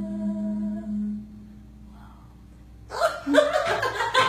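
The last held note of a song stops about a second in. After a short pause, people break into laughter and talk near the end.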